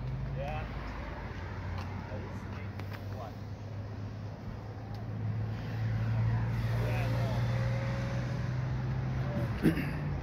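A car engine idling steadily, getting louder about halfway through, with people talking in the background and one sharp knock near the end.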